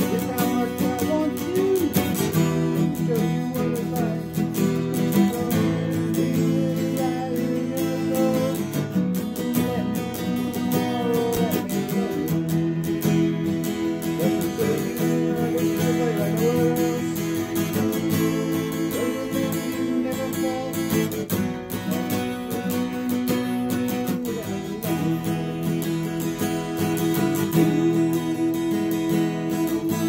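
Acoustic guitar being strummed, playing a song.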